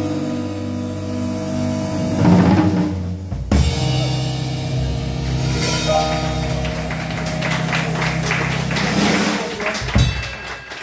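Small jazz combo playing live: drum kit, upright bass and keyboard with sustained chords, coming to the close of the tune with a sharp final accent at the very end.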